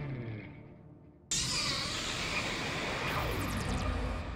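Outro music fading out, then, about a second in, a cinematic whoosh sound effect of an animated logo sting starts suddenly and holds, with a low rumble and a falling tone sliding down through it.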